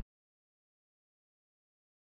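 Complete digital silence: the sound track drops out entirely, cut off abruptly at the start.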